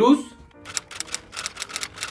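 A quick run of typing clicks, about eight a second, over faint background music.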